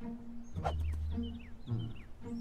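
Playful film score music built on a repeating low bass figure, with short high falling chirps near the end.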